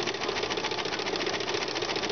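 Domestic sewing machine stitching steadily with a ruffler foot attached, its needle and the ruffler's pleating mechanism clattering at a fast, even rhythm as the fabric is gathered into pleats.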